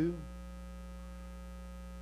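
Steady electrical mains hum in the sound system, a low buzz with many overtones, heard during a pause in a man's speech. The end of a spoken word fades out just after the start.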